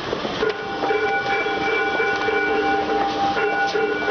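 Bronze temple bell struck, ringing with a long, wavering hum made of several steady tones. A second strike about three and a half seconds in renews the ring.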